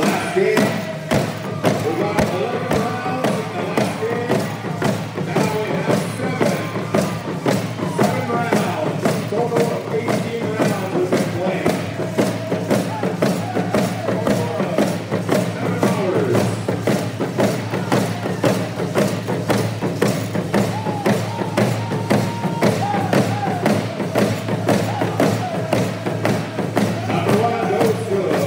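A group of singers beating frame hand drums in a steady, quick, even beat, with voices chanting a song over the drumming.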